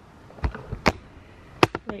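Four sharp taps or knocks at uneven intervals, the loudest a little past halfway.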